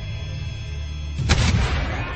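A single cannon blast about a second in, dying away over half a second, over a steady low rumble.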